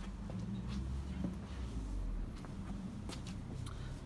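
Quiet outdoor background: a low, steady rumble with a few faint clicks.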